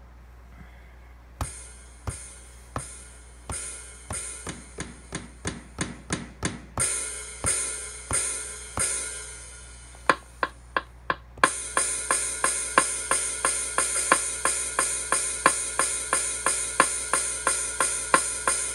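Stock drum-kit samples from an Akai MPC Live drum machine. Single drum hits start about a second and a half in and build into a pattern with hi-hats. About ten seconds in come four quick sharp hits, and then a full, steady drum loop with even hi-hats plays on.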